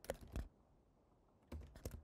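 Computer keyboard being typed on: two keystrokes near the start, a pause of about a second, then a quick run of keystrokes near the end.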